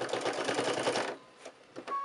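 Computerised sewing machine stitching fast through quilted fabric and batting, a rapid even run of needle strokes that stops just over a second in.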